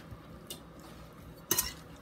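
Metal spoon stirring sliced peaches with sugar in a glass mixing bowl, clinking against the glass: a light clink about half a second in and a louder one about a second and a half in.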